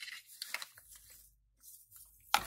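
Faint rustling and light handling noise as small tins and packaging from a lash-cleaning kit are moved about on a table, with a few soft ticks.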